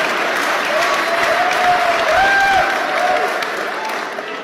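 Theatre audience applauding steadily, with a voice faintly heard over the clapping in the middle.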